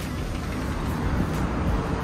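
Steady hum of city traffic rising from the streets below a high-rise balcony.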